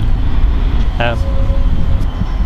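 A steady low rumble of outdoor background noise runs throughout. About a second in, a man's hesitant 'um' starts and is held as a level hum.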